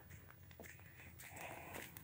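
Near silence with faint footsteps of a person walking.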